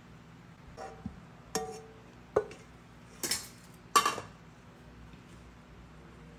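A serving spoon clinking against a ceramic plate five times as sauce is spooned over the food, with a brief ring after some strikes and the loudest clink near the end.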